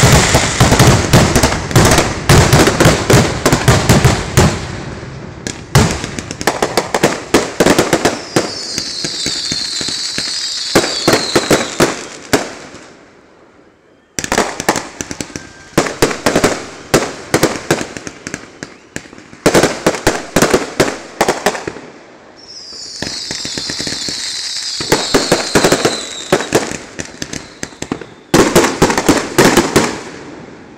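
Consumer fireworks fired from the ground close by: rapid runs of sharp bangs and pops as multi-shot cakes send shots skyward, broken by stretches of high hissing crackle. There is a brief lull about halfway through, then another round of rapid bangs.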